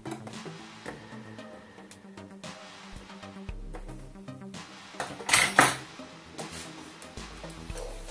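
Background electronic music with a steady beat, over scattered clicks of a plastic outlet-strip housing being handled and pressed together. Two loud sharp clacks come about five and a half seconds in.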